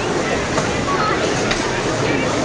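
Indistinct voices over a steady, noisy hall background, with a single sharp knock about one and a half seconds in.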